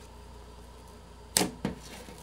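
Pink glitter slime being stretched and folded by hand, giving two sharp clicks just past the middle, about a third of a second apart.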